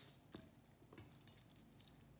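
Near silence with a few faint clicks of metal forks against a stainless steel mixing bowl as cooked pork is pulled apart.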